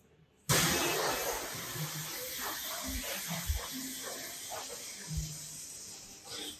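A steady hiss that starts about half a second in and slowly fades, with a few faint low thuds.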